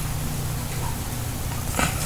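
Steady low hum with faint hiss, and a brief rustle and clicks near the end as a plastic DVD case is handled.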